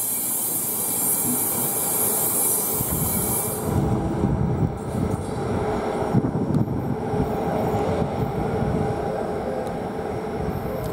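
A departing passenger train's coaches rolling away over the track, with wheel and rail noise and a faint steady wheel squeal. A high hiss cuts off about four seconds in, after which the rumble grows stronger and more uneven.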